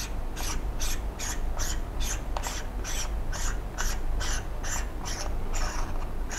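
A screw-on macro lens element being unscrewed by hand from a clip-on wide-angle lens on a compact camera: the threads give a rhythmic rasping, about four short scrapes a second, as it is turned.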